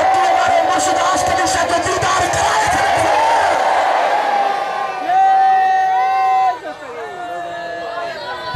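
Men's voices over a loudspeaker in long, held chanted calls, with a crowd voicing along. A single voice holds one strong call that cuts off about six and a half seconds in, followed by a quieter held call.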